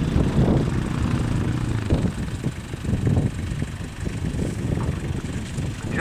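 Uneven low rumble of wind buffeting the camera's microphone, with a few dull thumps.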